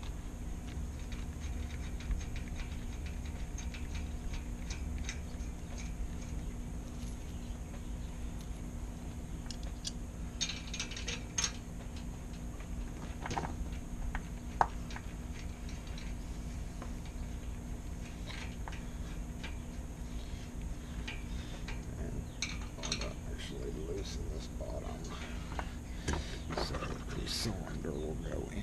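Small metal clicks and rattles of a mortise lock body and its hardware being handled and fitted into a steel gate, with a sharper click about fourteen seconds in.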